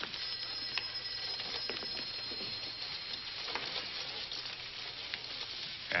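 Steady hiss and crackle of an old film soundtrack, with a few faint clicks scattered through it.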